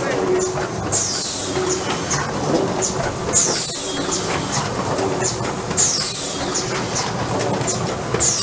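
AFM 540A lid-making machine running through its cycle. About every two and a half seconds there is a hiss of air, followed by clicks and clatter, over a steady mechanical hum.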